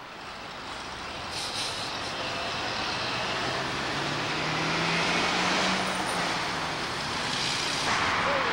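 Road traffic: a steady rush of passing cars and trucks that slowly grows louder, with one vehicle's low engine drone rising a little in pitch about halfway through.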